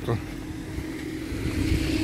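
A motor vehicle running nearby: a steady engine hum that grows louder near the end.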